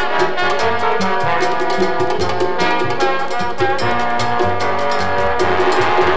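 Jazz trombone section playing sustained chords over a moving bass line and light percussion, with no singing.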